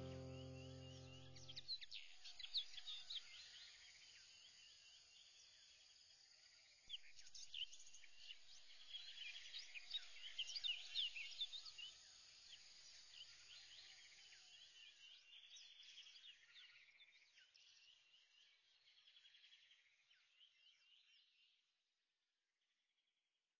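A sustained music chord fades out over the first two seconds. Faint birdsong follows: many short chirps, sparse at first, busiest in the middle, and dying away well before the end.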